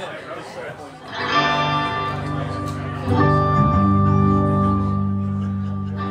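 Electric guitar chord struck about a second in and left to ring, then a second chord with a deep held bass note about three seconds in, both sustaining and slowly fading. The band is noodling loosely rather than playing a song.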